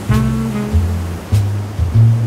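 Smooth jazz: a melody note near the start over a moving bass line, with the sound of ocean surf mixed underneath.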